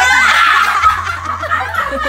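Women laughing loudly, a high laugh at the start that falls in pitch and trails off into more laughter.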